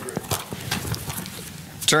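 Papers being handled and set down on a wooden pulpit, with a scatter of light knocks and taps.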